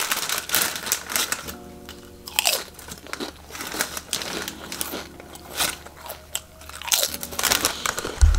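Crinkly plastic packaging being handled and crumpled, in irregular crackles and rustles.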